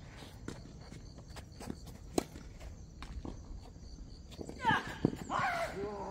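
Tennis rally on a hard court: sharp racket hits on the ball and lighter bounces, the loudest hit about two seconds in and another about five seconds in. A person's voice calls out near the end.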